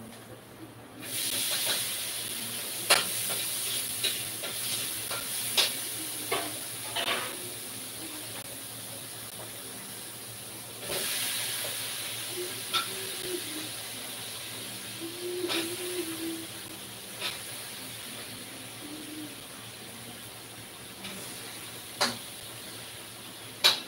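A steady hiss that swells about a second in and again near eleven seconds, with scattered light clicks and knocks.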